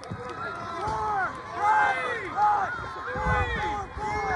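Indistinct talking from people around the camera, with no words that can be made out. A short low rumble comes about three seconds in.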